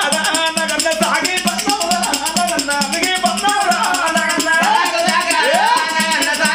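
Telugu Oggu Katha folk music: a man's voice singing or chanting over a fast, steady shaking of tambourine jingles. Near the end the voice sweeps up in pitch.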